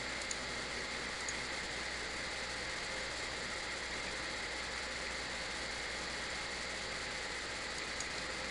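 Steady background hiss, like an air conditioner or fan running, with a few faint clicks in the first second or so.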